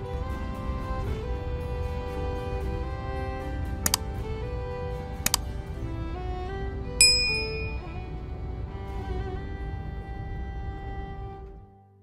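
Background music with held, string-like tones. Partway through come two short clicks, then a bright bell ding from a subscribe-button animation, the loudest sound in the stretch. The music fades out just at the end.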